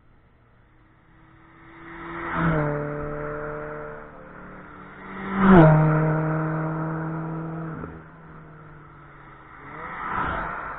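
Two cars passing close by at speed on a race track, one after another, about three seconds apart. Each engine note rises in loudness and drops in pitch as the car goes past, and the second pass is the louder. Another car is coming up near the end.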